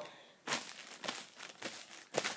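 Paper coffee filter crinkling as hands press and smooth it flat, in several short rustles starting about half a second in.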